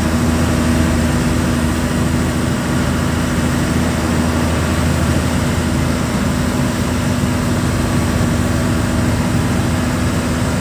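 Truck's diesel engine running steadily while driving at road speed, an even drone with a constant tone, mixed with tyre and wind noise.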